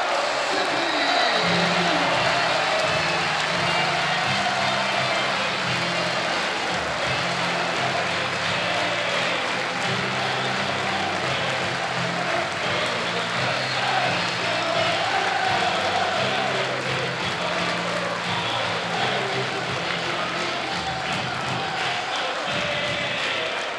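Football stadium crowd cheering and applauding, with music playing over it; a bass line comes in about a second in.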